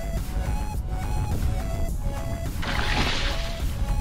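Background music with a steady beat. About two and a half seconds in, a splash of water lasting about a second as a released alligator gar swims out of the landing net.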